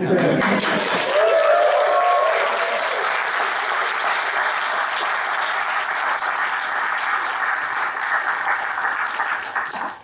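Audience applauding, a dense, steady clatter of many hands clapping that lasts about ten seconds and falls away at the end.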